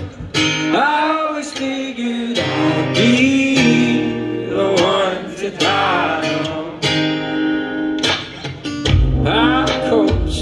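Acoustic guitar strummed in a steady rhythm, with a male voice singing over it.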